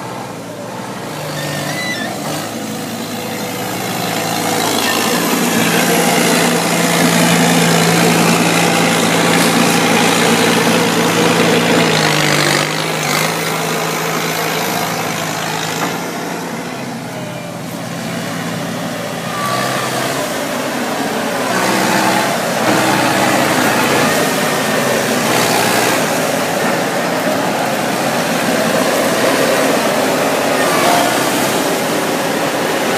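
A side-by-side harvester's engine and machinery running. A steady engine note with a dense mechanical clatter grows louder several seconds in, eases in the middle and rises again near the end. The engine note shifts in pitch a few times.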